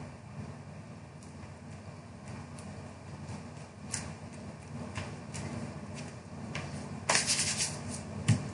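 Hands handling cardstock as a die-cut paper frame is set onto a card front and pressed down, giving faint rustling and a few light taps, with a louder brushing scuff of palms over the paper near the end.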